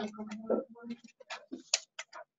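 Computer keyboard being typed on: about half a dozen separate key clicks in the second half.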